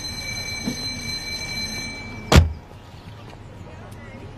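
A car door being shut once with a solid thump, a little over two seconds in.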